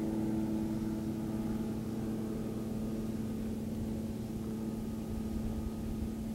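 A motor running steadily at constant speed: an even, pitched hum over a low rumble that does not change.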